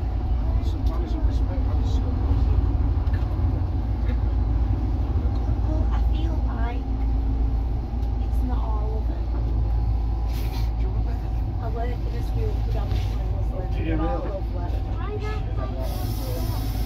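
Leyland Leopard bus's underfloor diesel engine running with a steady low rumble, heard from inside the passenger saloon, with passengers chattering over it.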